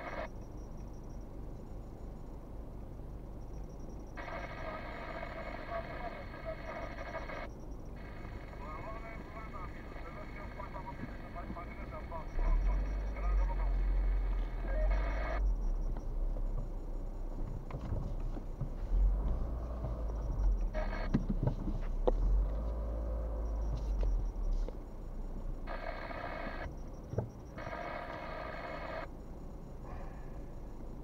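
Inside a slowly moving car, a faint voice comes and goes in several stretches, thin and clipped like a phone line. Under it runs the low rumble of the car, louder from about twelve to twenty-four seconds in as the car moves off.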